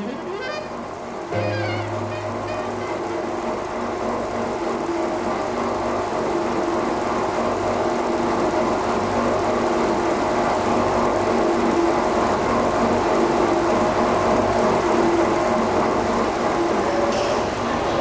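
A large industrial clay extruder running steadily, its motor giving a constant low hum that starts about a second in, with an even churning noise over it.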